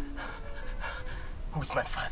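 Speech: a man's voice in short, broken phrases, with a louder burst near the end.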